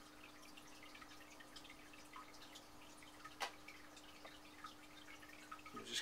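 Faint, sparse wet dabs and ticks of slip-covered fingers working on a clay teapot, with one sharper click about three and a half seconds in. A steady low hum runs underneath and stops shortly before the end.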